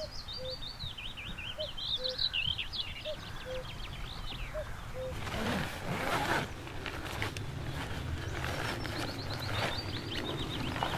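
Common cuckoo calling its two-note 'cuck-oo' four times, about one and a half seconds apart, over the high twittering song of a smaller bird. About five seconds in, fabric rustles as a camouflage blind is pulled from a backpack.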